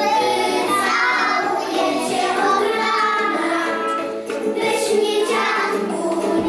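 A group of toddlers singing a song together, with musical accompaniment.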